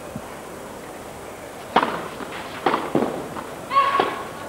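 Tennis racket hitting the ball: a crisp strike about halfway through and another under a second later, then a short, sharp shouted "out" call near the end, the line judge ruling the return narrowly out.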